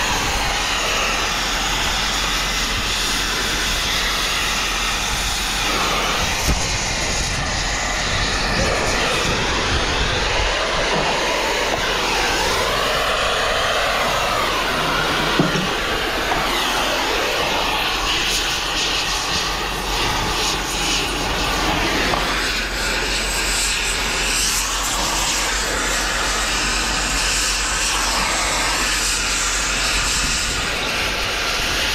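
Gas torch burning with a steady, continuous hiss as its flame is worked over a scrap radiator to melt it out.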